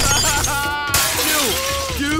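Glass shattering as a cartoon sound effect: a sharp crash at the start and a second crash about a second in, with a voice crying out between them.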